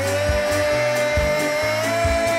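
A male singer holding one long, steady high note that rises slightly near the end, over a live reggae band's pulsing bass line.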